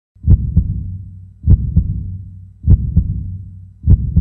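Heartbeat sound effect: slow lub-dub double thumps, four of them about 1.2 seconds apart, each followed by a low rumble that fades away.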